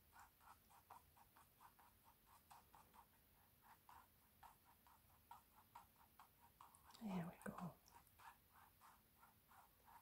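Faint, quick swishes of a round mop brush skimming over wet acrylic paint on canvas, about three light strokes a second, dusting the paint into a soft blend.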